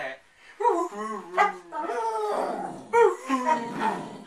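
A dog "talking" on the command to speak: drawn-out, howl-like vocalizations that waver up and down in pitch, in about three stretches with short breaks between.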